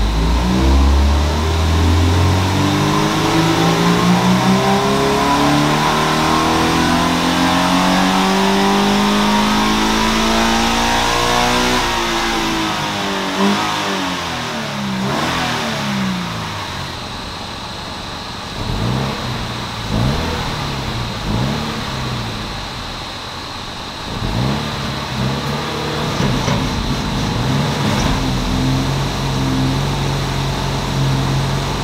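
Stock Toyota GT86's 2.0-litre flat-four boxer engine making a power pull on a hub dyno: revs climb steadily for about twelve seconds, then fall away as the throttle is lifted. A few short revs follow before it settles to idle.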